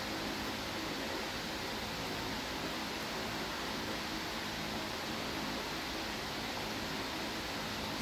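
Steady, even hiss of background room noise, with no distinct knocks, clicks or voices.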